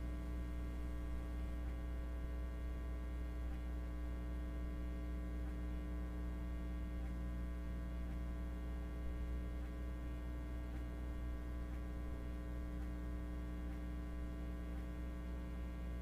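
Steady electrical mains hum with a stack of evenly spaced overtones, unchanging throughout.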